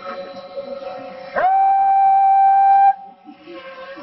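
A horn blown in one long, loud held note of about a second and a half that scoops up into pitch at its start. Steadier held tones from other wind instruments lie underneath.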